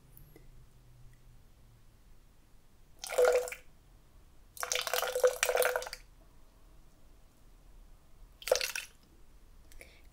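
Orange juice poured from a bottle into a clear plastic cocktail shaker, in three splashing pours: a short one about three seconds in, a longer one of over a second soon after, and a brief last splash near the end.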